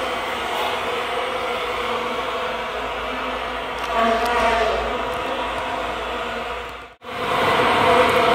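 A steady, chant-like drone of several sustained tones over a hiss. It cuts off abruptly about seven seconds in, and a louder steady sound takes over.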